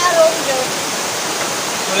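Steady hiss of rushing water, with a few words spoken near the start.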